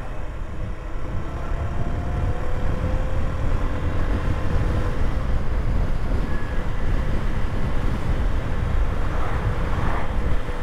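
Honda CB125F's single-cylinder engine running steadily as the bike rides along, mixed with wind rushing over the microphone; the sound grows a little louder over the first couple of seconds.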